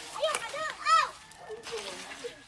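A child's high-pitched voice calling out about four quick sing-song syllables in the first second, the last one the loudest.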